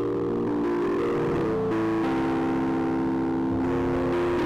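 Nord Electro 4 stage keyboard playing slow, sustained chords. The held notes shift to new chords every second or so.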